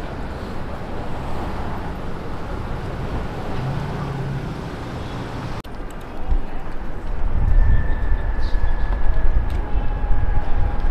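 City street traffic noise: a steady wash of passing cars and tyres on the road. About six seconds in it gets louder, with a heavy low rumble and a faint steady whine.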